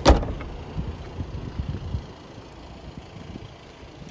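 The tailgate of a Volkswagen Tiguan is shut, giving one loud thud right at the start. Low rumbling and small handling knocks follow for about two seconds.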